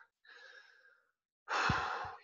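A person sighing: a faint breath, then a loud breathy exhale in the last half second.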